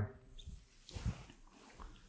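Quiet pause with faint room tone and a few faint, brief soft sounds, about half a second in, about a second in and near the end.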